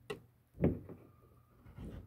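A few soft knocks and handling noises from knife work on a frog, the loudest thump about half a second in, and a faint scrape near the end.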